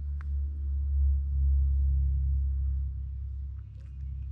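A low rumble from a cat pressed up against the microphone. It is loudest from about one to two and a half seconds in, with one short click just after the start.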